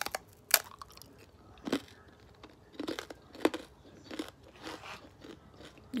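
A person biting into a thick, crisp cassava cracker (opak) with a sugar topping: two sharp crunches at the start, then irregular crunching as she chews.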